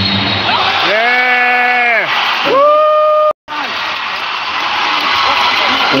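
Basketball arena crowd noise with two long drawn-out vocal calls, the second higher than the first; about three seconds in the sound drops out completely for a split second, then the crowd noise carries on.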